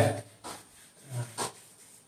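Chalk scratching on a blackboard in a few short strokes as a round drawing is scribbled in. A brief low hum-like sound comes about a second in.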